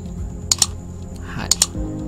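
Clicks from working a computer: two quick double clicks about a second apart, over a steady low hum.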